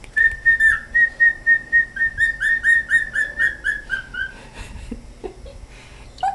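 Male cockatiel whistling its song: a run of short, clear notes, about four a second, that sink slightly in pitch over some four seconds, followed by a few softer, lower chirps.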